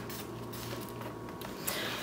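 Faint soft rustling and patting of hands smoothing damp potting soil in an aluminum foil roasting pan, over a low steady hum.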